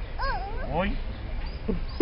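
Playful exclaimed "oh!" calls from voices, a couple of short cries that slide up and down in pitch in the first second.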